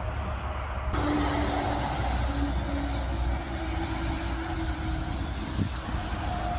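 Steady hiss of rain over a low rumble; the sound abruptly becomes brighter about a second in.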